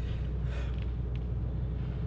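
Steady low rumble and hum of room background noise, with a faint click about a second in.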